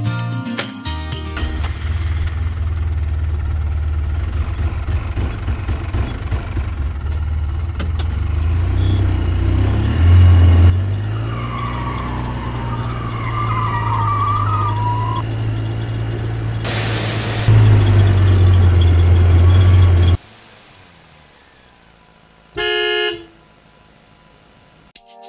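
Truck engine sound effect: a low, steady rumble that gets louder twice, about ten seconds in and again for a few seconds before it cuts off about twenty seconds in. A short horn toot follows near the end.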